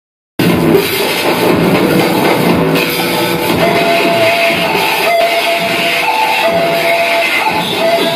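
Loud, dense noise music: a thick churning low layer under a repeating line of held high notes that step back and forth between two pitches. It starts abruptly about half a second in.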